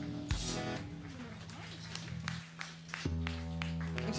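A live rock band with bass, guitars, keyboard and drums ends a song. A final chord and cymbal crash about a third of a second in are left to ring out and fade. Light clicks and a few fresh low bass notes follow about three seconds in.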